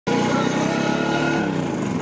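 Vintage Vespa scooter's single-cylinder two-stroke engine running, then faltering about one and a half seconds in, its pitch dropping as the engine stalls.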